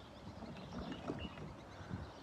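Faint water lapping around a small craft on a calm lake, with a few soft splashes.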